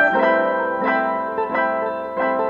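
Background piano music, a new note or chord every half second or so.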